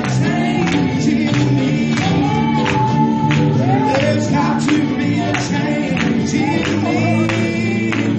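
Live gospel song: singing over a band, with a steady percussion beat of about two strikes a second.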